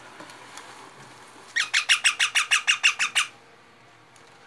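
Young rose-ringed parakeet calling: a rapid string of about a dozen calls, roughly seven a second, starting about a second and a half in and lasting under two seconds.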